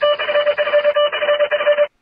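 A buzzing tone at one steady pitch with a rapid flutter, lasting nearly two seconds and cutting off abruptly.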